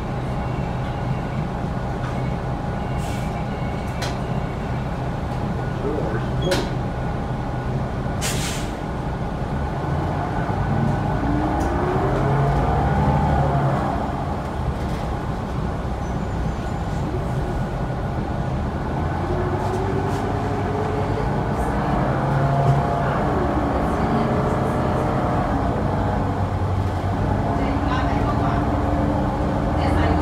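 New Flyer Xcelsior XD40 diesel city bus heard from inside the cabin while under way: a steady engine drone whose whine rises in pitch twice as the bus accelerates. There is a short air hiss from the brakes about eight seconds in, and a few rattles and clicks.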